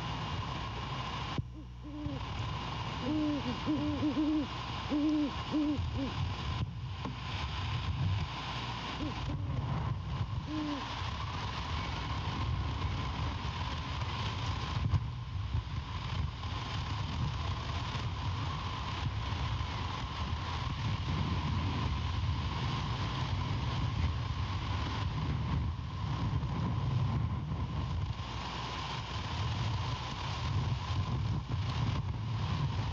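Great horned owl hooting: a run of short, low hoots starting about two seconds in and lasting some four seconds, then a single hoot around ten seconds, over a steady low rumble.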